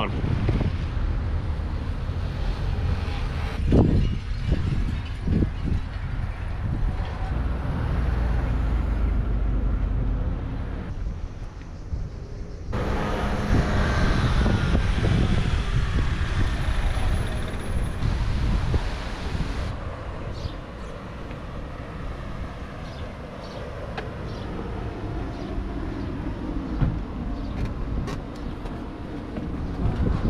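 Outdoor street ambience: wind rumbling on the microphone over traffic going by, the sound changing abruptly at a few cuts.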